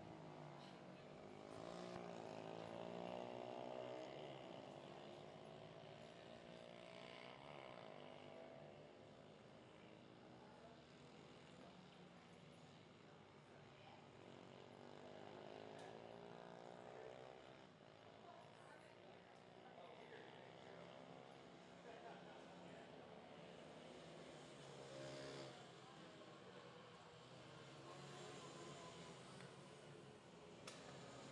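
Faint engines of small mini-GP racing motorcycles, their pitch rising and falling several times as they accelerate and pass.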